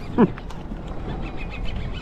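A man's brief laugh, one short sound falling in pitch about a quarter second in, followed by steady low background noise.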